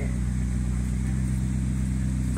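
McLaren 650S's twin-turbo V8 idling steadily as the car creeps forward at walking pace.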